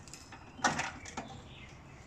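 A metal toolbox lid on the back of a camping trailer knocked shut once, about half a second in, followed by a few light clicks of handling.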